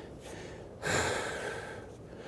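A man breathing out once, audibly, about a second in, the breath fading away within a second: effort breathing while holding a plank with shoulder taps.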